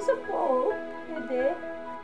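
Background music with sustained chords, with short sounds gliding up and down in pitch laid over it, the loudest about half a second in and another shortly before the end.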